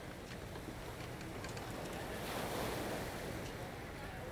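Faint, steady quayside ambience: an even wash of noise like sea and wind, swelling slightly around the middle.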